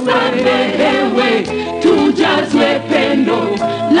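Gospel music: a choir singing together, with a steady low accompaniment beneath the voices.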